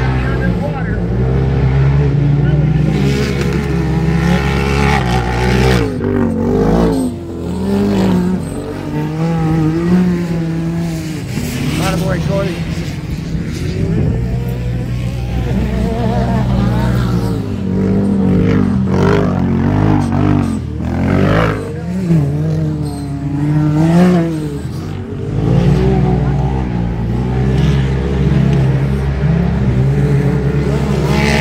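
Engines of 1000cc-class side-by-side UTVs racing on a dirt track, their pitch rising and falling as the drivers rev up and back off, over a steady low drone.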